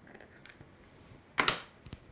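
An iPhone being slid out of a leather case: faint rubbing and handling, then one short, louder scrape or pop about one and a half seconds in as the phone comes free, and a small click near the end.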